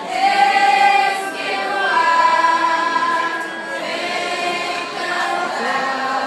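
A choir of teenage students singing, with notes held for about a second each.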